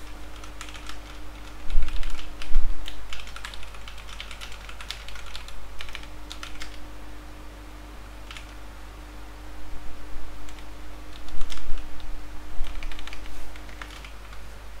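Typing on a computer keyboard: irregular bursts of key clicks, with a couple of heavier thumps about two seconds in.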